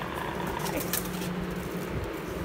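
Cardboard box flaps being handled and pulled open, a few light scrapes and clicks, over a steady low hum.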